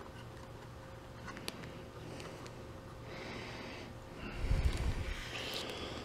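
Quiet handling noise over a low hum: a faint click, then rustling from about halfway, and a low bump and rumble near the end as the camera is moved.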